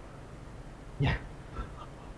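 Mostly quiet room tone with one short vocal sound from a man about a second in, a brief syllable transcribed as "nha".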